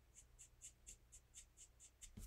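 Faint, quick scratchy strokes of an alcohol marker's tip on white cardstock, about four a second, laying dark shading along a branch.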